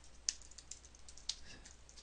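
Computer keyboard typing: faint, irregular keystrokes.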